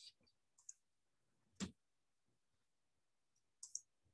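Near silence with a few faint, short clicks, the clearest about one and a half seconds in and two softer ticks near the end.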